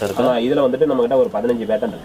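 A man talking, with no sound other than his voice standing out.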